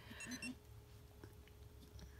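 Polar GPS sports watch giving a few short, faint electronic beeps in the first half second, its signal that it has found the GPS signal and training can begin.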